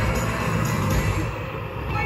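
Loud parade music with heavy bass, played from a Halloween parade float's sound system.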